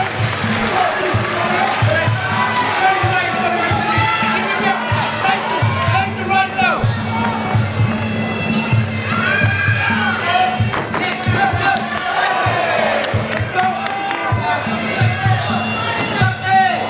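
Arena crowd cheering and shouting continuously, with fight music playing underneath.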